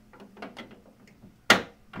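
Plastic toggle hinge being fitted into a Monoflo bulk container's sidewall: a few light clicks and rattles, then one loud snap about one and a half seconds in as it snaps into place.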